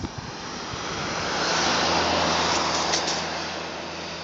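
A motor vehicle passing by: its noise swells to a peak about two seconds in and then fades, over a steady low engine hum.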